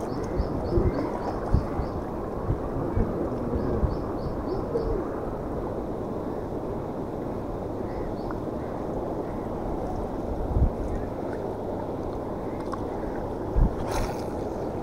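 Water lapping and gurgling against shoreline rocks, a steady rushing. A fast, high ticking comes in two short runs in the first five seconds, and a few low thumps from handling the rod break in, the loudest near the end.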